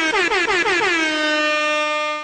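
Air-horn sound effect: one horn blast that opens with quick, repeated downward swoops in pitch, then settles into a single held tone.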